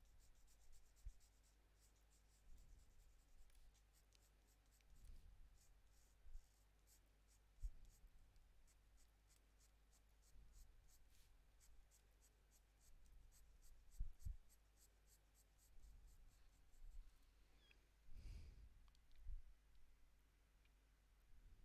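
Faint scratching of a Prismacolor Premier colored pencil laying short, quick strokes on toned paper, several a second. Now and then there are soft low knocks from hands handling the paper.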